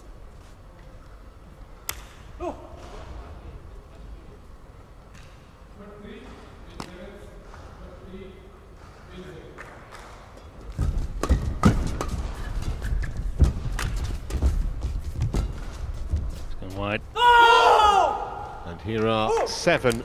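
Badminton rally: from about halfway through, rapid sharp racket strikes on the shuttlecock mixed with heavy footfalls on the court. Near the end comes a loud shout as the point is won.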